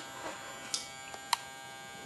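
A 400-watt high-pressure sodium grow light buzzing steadily. Two short clicks come a little before and a little after the middle.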